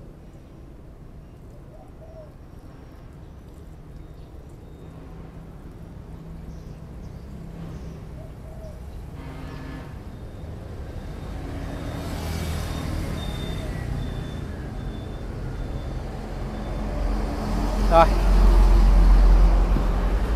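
Petrol being poured from a container into the fuel tank of a small four-stroke engine through the tank's filter screen. A low rumble grows louder over the last few seconds.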